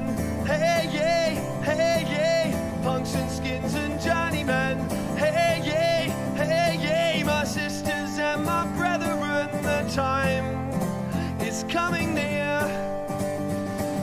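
Live folk-rock performance: a man singing over acoustic guitar.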